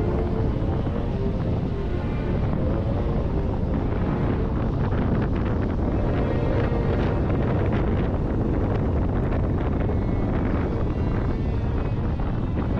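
Wind buffeting the microphone and steady low rumble from a car driving with its side window open, under background music with held notes.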